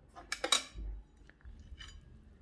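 Metal knife clinking and clattering against a glass plate: a few sharp clinks about half a second in, a soft dull thud just after, and a faint rattle near the end.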